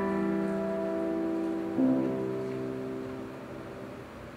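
Grand piano playing slow sustained chords: a chord struck just before rings on and fades, and a second, softer chord is struck about two seconds in and left to die away.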